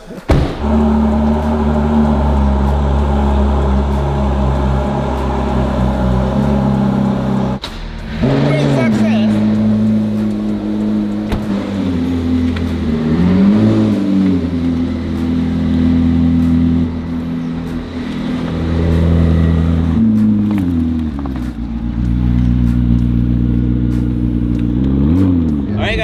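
Supercar engine idling, with four short revs whose pitch rises and falls. The sound breaks off about eight seconds in and starts again; after the break it is the McLaren P1's twin-turbo V8.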